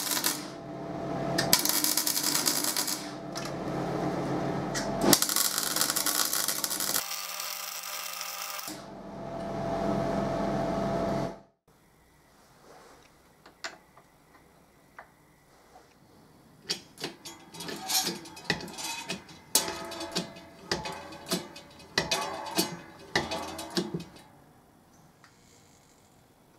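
Arc welding crackling in several runs with short breaks, joining a steel hub onto the end of a square steel tube, for about the first eleven seconds. After a sudden cut, scattered light clicks and clinks of a small metal hub fitted with a ball bearing being handled on a steel table.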